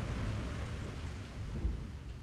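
Rain and thunder: a low rumble under a steady hiss of rain, slowly fading out.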